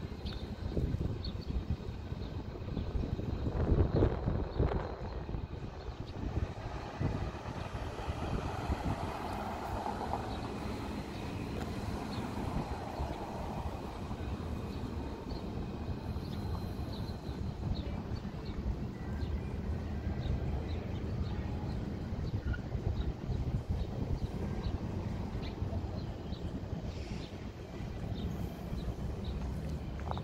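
Street traffic noise with cars driving past, a steady low rumble that is loudest about four seconds in.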